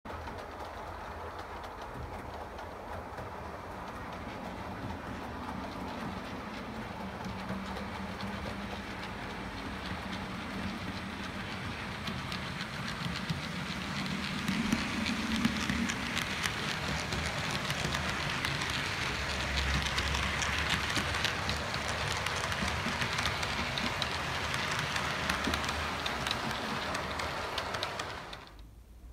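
Hornby OO gauge model HST train running along the layout track, its wheels rolling on the rails with a faint clickety-clack over the joints and a motor whirr. It gets gradually louder through the first two-thirds and eases off just before the end.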